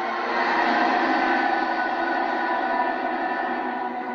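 Film soundtrack played through a television: a loud sustained chord of many held tones over a steady rushing noise, swelling about half a second in and holding.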